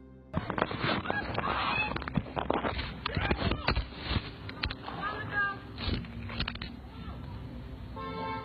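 Phone-microphone audio of people shouting and screaming in the background after gunfire, mixed with knocks and rustles of the phone being handled and dropped.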